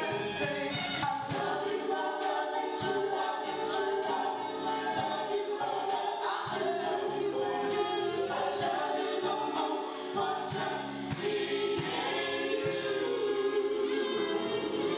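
Gospel choir singing in harmony, voices held in long sustained chords, backed by a live band.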